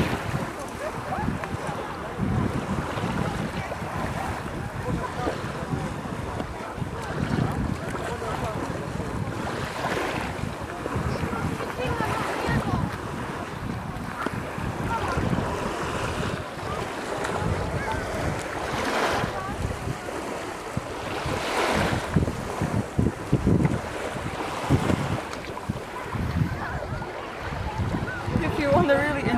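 Wind buffeting the microphone in uneven gusts during a dust storm, over small waves washing onto a sandy beach.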